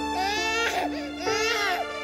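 A baby crying in two long wails, over background music with sustained notes.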